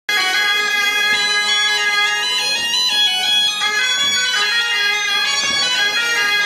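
Bagpipe music, a dance tune played over a steady drone, cutting in suddenly at the start and going on at a steady loud level.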